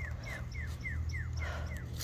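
An animal calling outdoors: a quick series of about nine short, high, falling notes, roughly four a second.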